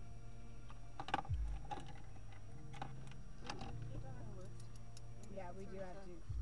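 A stationary car's engine idling, heard as a steady low hum inside the cabin, with a few sharp clicks about one, three and three and a half seconds in from handling the phone and its headphone cable; quiet voices come in near the end.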